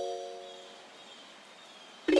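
Background music: a soft, bell-like keyboard chord ringing and slowly fading away.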